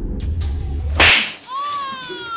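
A single loud, sharp slap about a second in, followed half a second later by a high, wavering wail.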